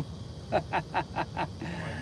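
A man laughing: a quick run of about six short "ha"s over roughly a second.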